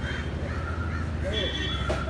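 Crows cawing repeatedly over a steady low rumble.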